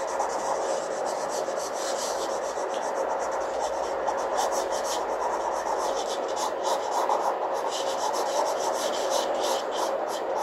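A pen scratching on paper in quick, repeated shading strokes, with a faint steady hum underneath.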